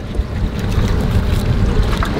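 Steady wind noise buffeting the microphone, a loud low rumble with hiss.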